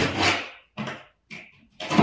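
Utility knife slicing through the paper backing of a snapped half-inch drywall sheet: a rasping cut for the first half second, two short scrapes, then another longer cut starting near the end.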